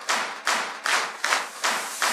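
A steady rhythm of claps, a little over two a second, with no bass or other instruments under them.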